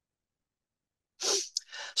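Silence on the line, then about a second and a quarter in, one short breathy burst from the presenter, a sharp breath or sniff, just before he starts speaking again.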